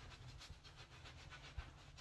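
Faint, soft rubbing of a plush towel being wiped over a beard and face, with one small tap near the end.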